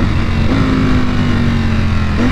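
2021 Ducati Panigale V4 SP's V4 engine running under way, a steady drone whose pitch eases slightly downward, with wind rush on the onboard microphone.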